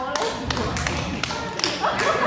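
A few sharp taps, spaced irregularly, and a dull thud, mixed with people's voices.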